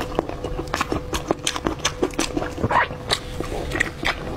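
Close-up wet chewing and lip-smacking as fatty braised pork is bitten and eaten, with many sharp, irregular mouth clicks several times a second.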